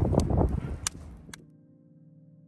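Wind buffeting the microphone beside a smouldering, short-circuit-burned Christmas tree, with a few sharp cracks. About a second and a half in, it cuts to quiet, sustained electronic music tones.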